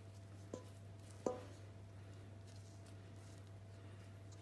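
Silicone spatula knocking against a stainless steel mixing bowl while folding thick cookie dough: two light knocks in the first second and a half, the second louder with a short metallic ring. A faint steady hum lies underneath.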